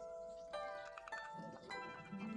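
Background music: bell-like chime notes struck one after another, a few each second, each ringing on.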